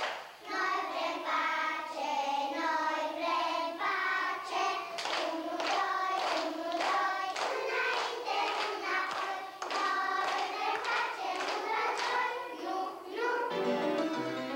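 A class of young girls singing a children's song about peace together. Near the end the singing gives way to keyboard music.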